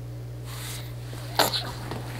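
A man's short, sharp burst of breath about a second and a half in, over a steady low electrical hum.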